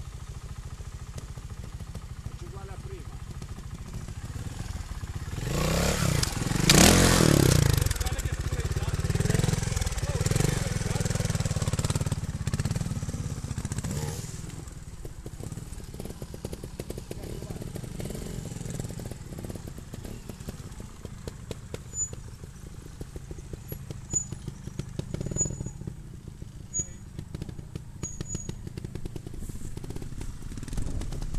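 Trials motorcycle engine running at a low idle, revving up hard about six seconds in and settling back to idle over the next several seconds.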